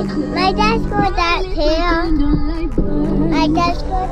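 Music: a high-pitched voice sings a wavering melody over sustained low chords, which drop out for a couple of seconds in the middle.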